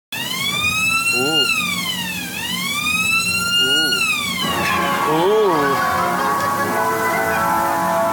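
A siren-like whistle sweeps up and down twice, then gives way about four and a half seconds in to music of steady held notes, as from a carousel's sound system.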